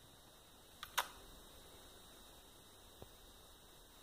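Quiet room with a faint steady hum, broken by a sharp double click about a second in and a fainter tick near the end.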